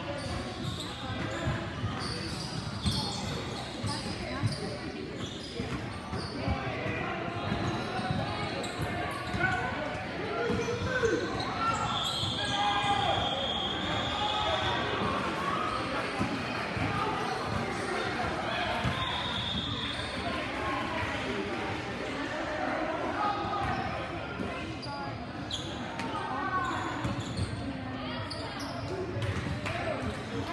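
Indoor basketball game: a basketball bouncing on the gym court among players' and spectators' voices, all echoing in a large hall. A steady high tone sounds for about two seconds near the middle and again briefly later.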